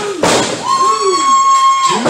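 A sharp slap or thud on the wrestling ring at the start, then a long, high-pitched held shout from the crowd, steady for over a second near the end.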